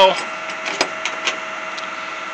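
A steady machine hum holding one fixed pitch with its overtones, with a couple of faint clicks.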